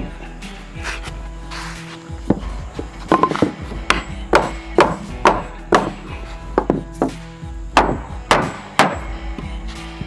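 Hammer knocking on a scrap wood block to drive a notched wooden deck board tight around a post: about a dozen sharp wooden knocks, roughly two a second, from about three seconds in until near the end. Background music plays under them.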